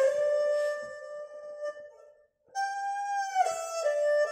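Erhu playing a slow, mournful phrase over hi-fi loudspeakers: a held note fades away, there is a brief silence, and then a higher note comes in and slides down to a lower pitch.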